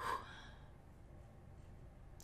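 A woman's single short, audible breath right at the start.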